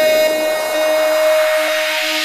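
House-music intro: a held synth note over a broken, repeating lower tone, with a noise sweep rising in pitch and growing louder as a build-up before the beat drops.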